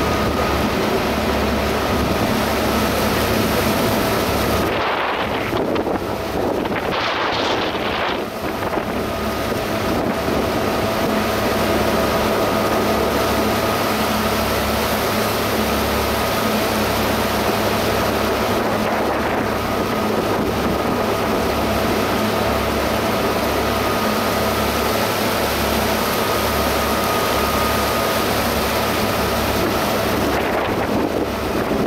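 A sightseeing boat running steadily under way: a constant engine hum with a faint high tone, water rushing in the wake, and wind buffeting the microphone. There is a brief surge of rushing noise about seven seconds in.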